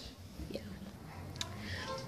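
Quiet speech: a woman's soft 'yeah' in a pause in her talk, over a low steady background hum.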